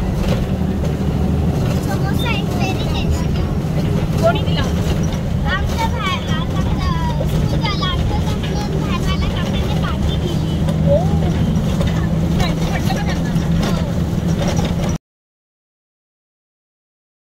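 Bus engine and road noise heard inside the passenger cabin, a steady low drone, with a child's voice talking over it. The sound cuts off suddenly near the end.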